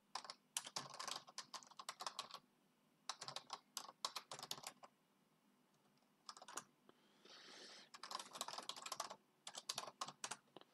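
Faint typing on a computer keyboard: several bursts of quick keystrokes separated by short pauses.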